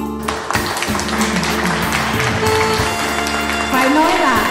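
Live band music playing between vocal lines, with audience applause in the first couple of seconds. A singing voice comes in near the end.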